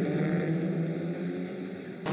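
A pack of TCR touring cars' turbocharged four-cylinder engines running at a steady note, fading away near the end.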